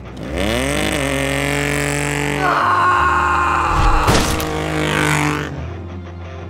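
A car engine revving up sharply and holding at high revs, with tyres squealing from about two and a half seconds in as the car slides on loose gravel and sand.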